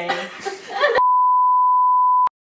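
Laughter, cut off about a second in by a loud, steady 1 kHz test tone, the reference tone that goes with television colour bars, used here as an editing transition.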